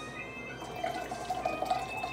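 Pineapple juice poured from a small can into a plastic blender cup, the stream starting about half a second in and running on.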